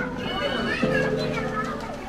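Children's voices and shouts at play, over background music with long held chords; a new chord comes in just under a second in.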